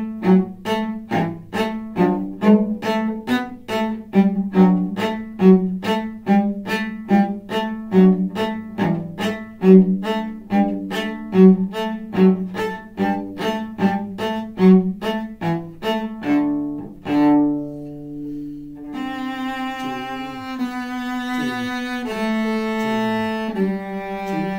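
A cello playing a melody: short, sharply attacked notes about three a second for most of the time, then, from about two-thirds of the way in, slower sustained bowed notes.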